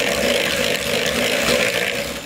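Electric hand mixer running steadily, its beaters churning creamed butter, sugar and egg in a glass bowl.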